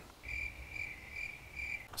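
A cricket chirping in a steady rhythm, one high pitch repeated a little more than twice a second.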